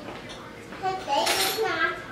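Cutlery clinking and scraping on dinner plates, with a short, brighter clatter about a second in.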